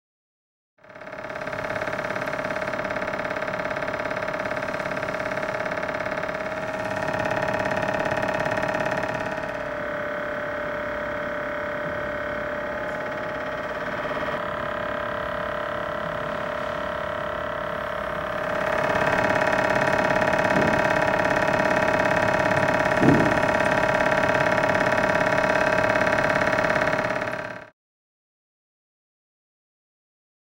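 Mechanical vibration shaker running with a steady machine hum and a strong whine. It gets a little quieter partway through, then louder again for the last third, with a single sharp click late on, and cuts off suddenly at the end.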